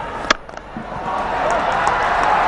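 A single sharp crack of a cricket bat striking the ball, then stadium crowd noise swelling as the shot races into the gap for four.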